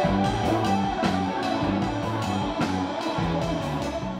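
Live pop-rock band playing on stage: drum kit keeping a steady beat under sustained bass and keyboard notes.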